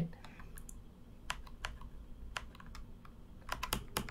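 Faint, sharp computer clicks from working the on-screen chess board: a few single clicks spread out, then a quick run of several near the end.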